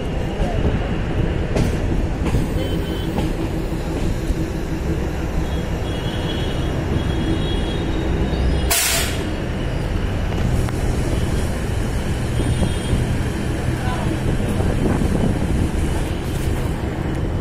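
DEMU (diesel-electric multiple unit) train running along the line, heard from its open doorway: a steady loud rumble of wheels on rail and running gear, with one short sharp hiss about nine seconds in.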